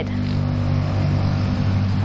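A steady low mechanical hum with a hiss behind it, unchanging throughout.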